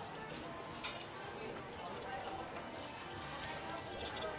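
Faint, steady scratching of a metal spoon's edge over the latex coating of a scratch-off lottery ticket.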